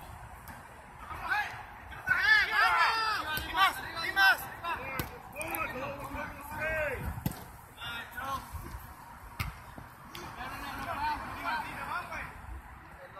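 Soccer players shouting and calling out to each other during play, most of it in a burst from about two to four and a half seconds in and again near the end, with sharp thuds of the ball being kicked.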